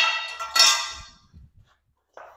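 A frame post of a golf practice net set down on a concrete floor: one sharp clang that rings and fades over about a second, followed by a few faint knocks.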